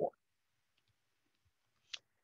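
Near silence after the last syllable of a spoken word, broken by one short, sharp click just before the end.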